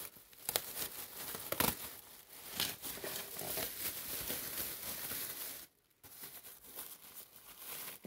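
Thin plastic bag rustling and crinkling as a hand rummages inside it, with many short sharp crackles. The sound pauses briefly about three-quarters of the way through.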